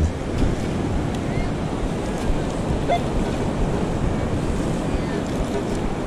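Steady wash of ocean surf over shallow wet sand, mixed with the low rumble of wind on the microphone.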